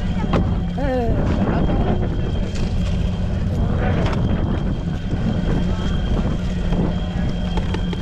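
A boat engine running steadily nearby, a low hum, with wind on the microphone and a brief voice about a second in.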